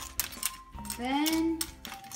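A metal spoon clicking and clinking against clam shells and the pan as the clams are stirred. About a second in, a drawn-out rising vocal or musical note is the loudest sound, over background music.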